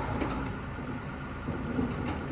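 Heavy truck's diesel engine idling with a steady low rumble, with a few faint knocks.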